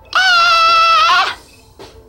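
A woman's high-pitched vocal noise, held steady for about a second with her tongue stuck out, dipping and then rising briefly at the end: a mocking, taunting sound.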